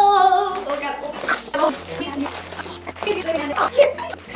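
Speech only: a young woman's voice drawing out "go" with a wavering pitch, then a few short words.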